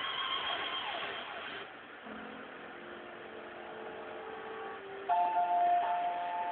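Television broadcast audio picked up by a cellphone microphone at the cut to a commercial break. The ballgame's background noise fades out about a second and a half in. A few soft held music notes follow, then a louder pair of steady music tones starts about five seconds in as a car commercial begins.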